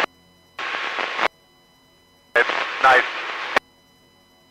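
Two short two-way radio transmissions, each switching on and off abruptly as a burst of static hiss. The second, longer one carries a snatch of garbled speech and cuts off with a sharp squelch click.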